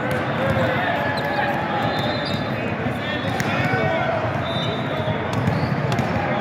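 Volleyballs being hit and bouncing on the hard courts of a large, echoing tournament hall, over a constant babble of many voices.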